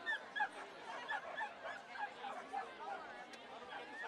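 A small dog, a dachshund, yapping in a quick run of high barks, about three a second, loudest at the start, over crowd chatter.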